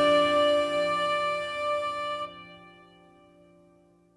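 Instrumental progressive rock closing on a held chord that dies away, the upper notes stopping a little over two seconds in and the low notes fading out soon after, ending a track.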